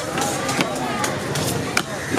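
A heavy steel cleaver chopping through tuna steaks onto a wooden chopping block: several sharp chops in quick succession. Voices chatter in the background.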